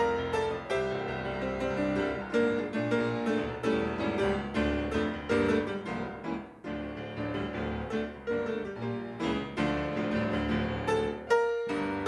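Solo grand piano played without pause, a flowing run of chords and melody notes. There is a brief lull about halfway through and a short break just before the end.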